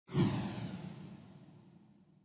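Whoosh sound effect accompanying an animated title graphic: it starts suddenly and fades away over about two seconds.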